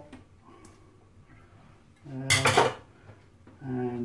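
Quiet handling with a couple of light clicks as potato slices are laid in, then a loud metallic clatter about two seconds in: an aluminium colander set down on the worktop.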